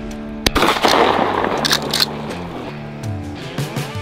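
Guitar background music with a single sharp shotgun shot about half a second in, followed by a second or so of loud noise with a few more sharp cracks, fitting shots at flying ducks.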